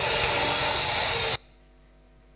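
Soundtrack of a played video clip over a hall's sound system: a loud, even rushing noise with a sharp click about a quarter second in, cutting off suddenly after about a second and a half, leaving only a faint steady hum.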